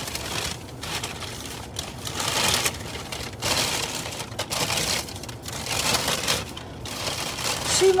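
White packing paper crinkling and rustling as it is handled and unwrapped, in irregular bursts.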